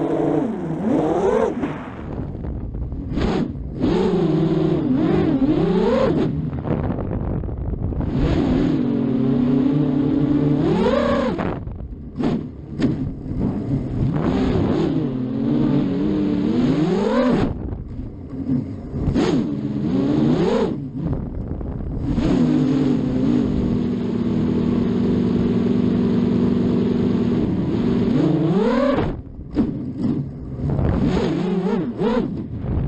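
A 7-inch FPV quadcopter's Cobra 2207 2300KV brushless motors spinning Gemfan 7038 props, heard from the onboard camera. The motor whine swells and rises in pitch every few seconds as the throttle is punched, with short drops between swells and a steadier, even-pitched stretch in the last third. The quad is flown at no more than half throttle.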